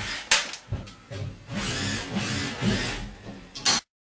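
Metal shovel blade knocking and scraping in a wet, gravelly trench at the foot of a basement wall. There is a sharp knock early on, then a stretch of scraping and another knock, before the sound cuts off suddenly near the end.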